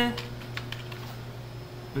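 A few faint computer keyboard key presses over a steady low hum.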